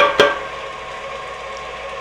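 Two quick knocks of an aluminium cake pan tapped on a wooden cutting board to knock out loose flour, then the steady hum of an electric mixer creaming butter.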